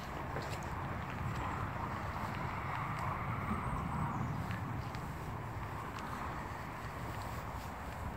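Steady outdoor background noise with a low, fluctuating rumble from wind on the microphone, and a few faint clicks.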